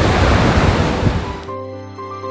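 Ocean surf breaking on the beach with wind on the microphone; about one and a half seconds in it cuts off abruptly and soft background music with held notes takes over.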